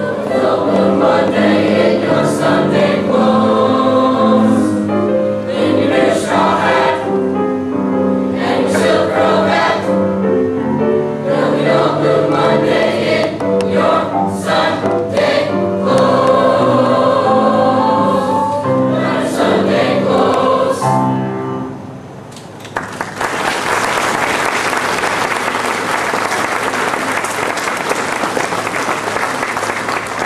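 Middle school choir singing a show tune with accompaniment, ending about 21 seconds in. After a brief pause, the audience applauds steadily.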